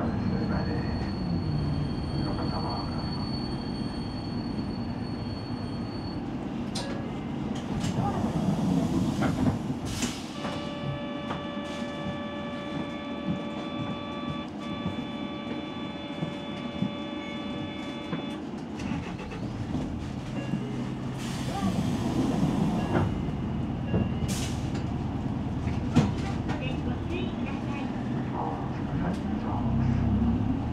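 Outdoor street ambience: a steady low rumble of vehicle traffic with voices in the background. A high steady tone sounds for the first six seconds or so, and a steady pitched hum with overtones holds for about eight seconds midway.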